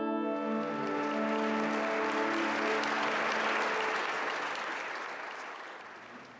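Audience applause that swells and then fades out near the end, over the last held chord of an orchestra dying away in the first half.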